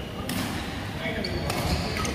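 Badminton rackets striking a shuttlecock in a rally: two sharp hits, about a second and a quarter apart.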